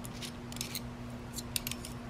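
A few light metallic clicks of a bolt, nut and steel plates being handled as a stainless steel grappling hook is put together, most of them in the second half, over a faint steady hum.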